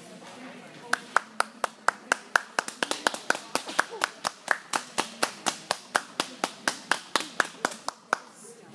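A single pair of hands clapping steadily close by, starting about a second in, at about four sharp claps a second.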